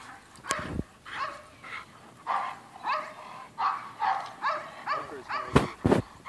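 A dog barking rapidly and repeatedly, about three barks a second, during protection training. A few sharp knocks cut in, one about half a second in and two close together near the end.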